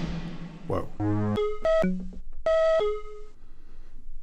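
Samples auditioned on a Synthstrom Deluge groovebox while scrolling its audio file browser: a fading hiss, then a string of short pitched notes at several different pitches, one after another.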